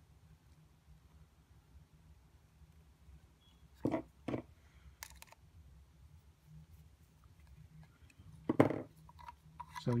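Small plastic clicks and knocks from handling a PVC elbow joint while an M3 screw is driven into it with a screwdriver: two short knocks about four seconds in, a sharp click just after, and a louder knock near the end, over a low room hum.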